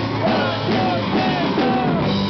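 Rock band playing live: a male voice singing over strummed acoustic guitar, electric bass and drums, taken from the audience with rough, low-quality sound.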